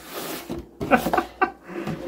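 Cardboard sleeve sliding off a boxed trading-card collection: a brief papery scrape at the start, then a few short bits of voice around the middle.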